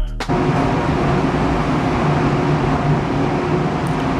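Music cuts off right at the start, giving way to a steady mechanical drone with a low hum: the ambient noise of an underground parking garage.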